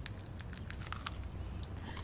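A man chewing a bite of crusty bread, with a scattering of short, sharp crunches.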